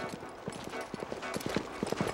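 Horse galloping: a quick, irregular run of hoofbeats that grows louder toward the end.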